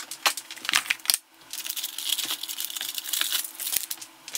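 A few sharp clicks and knocks of kitchen containers being handled, then aluminium foil being pulled off a bowl and crumpled, a dense crinkling for about two seconds.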